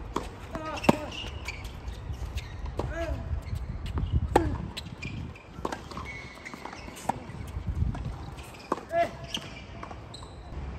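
Tennis rally on a hard court: a series of sharp racket-on-ball strikes and ball bounces, the loudest about a second in with the serve, with short squeaks between the hits.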